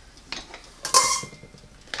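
A metal measuring cup being handled: a few light knocks, then a sharp metallic clink about halfway through that rings briefly.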